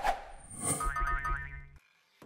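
Short cartoon-style sound-effect sting for an animated channel logo: a sudden hit, a bright high sparkle, then a pitched tone over deep bass that cuts off suddenly near the end.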